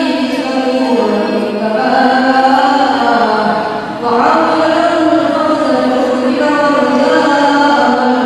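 A group of voices chanting an Islamic devotional sholawat together, in long held notes that move in pitch every second or two.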